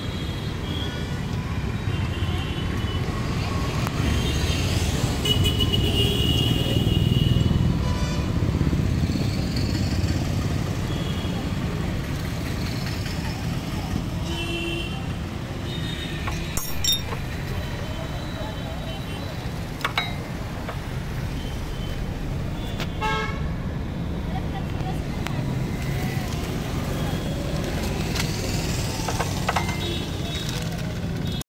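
Street traffic: a steady low rumble of passing vehicles with several short horn toots. A few sharp clicks come in the second half.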